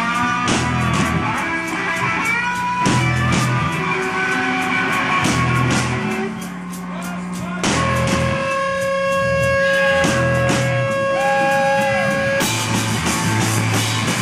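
Live rock band playing an instrumental passage: electric guitar, bass and drums with keyboards. The band drops back briefly a little past the middle, then comes in again under a chord held steady for several seconds.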